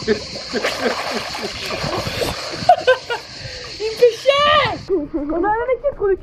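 Swimming-pool water splashing and sloshing around swimmers. From about three seconds in, high excited voices call out over it.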